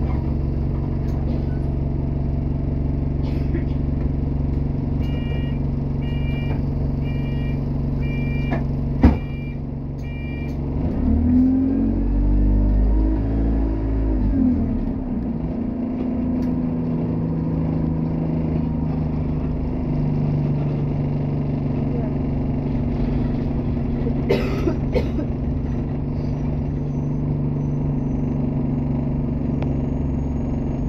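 A bus engine idling at a stop; about five seconds in a run of about eight short high beeps sounds, the door-closing warning, with a sharp thud of the doors shutting near the end of them. The engine then revs up and falls back as the bus pulls away, and runs steadily, its note shifting once about twenty seconds in.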